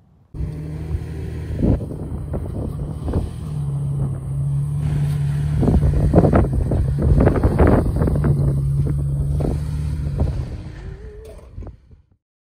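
Toyota Tacoma pickup's engine running at low, steady revs as it drives over rough dirt ground, with irregular crunches and knocks that are thickest in the middle. The sound cuts in suddenly just after the start and fades out near the end.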